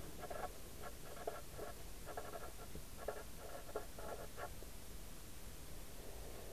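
Felt-tip marker writing on paper: a quick run of short strokes that stops about four and a half seconds in.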